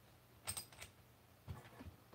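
A few quick small metallic clicks, then two duller knocks: a coax connector being undone from a handheld two-metre radio and the radio and cable being handled.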